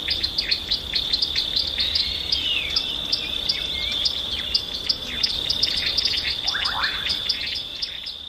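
Small birds chirping rapidly, several short calls a second, over a steady high-pitched insect drone, with a few falling whistled calls.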